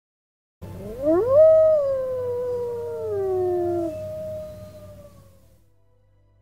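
Two overlapping animal howls: the first rises sharply about a second in and then slides slowly down in pitch, and a second one joins before the first ends, holds a steady pitch and fades away near the end.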